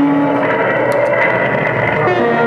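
Live noise-music electronics: steady held pitches layered over dense, harsh noise. A low hum drops out about half a second in while a higher whine holds on, with a few sharp clicks about a second in.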